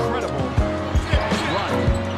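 Basketball dribbled on a hardwood court, a low thump roughly every third of a second, over arena music and crowd noise.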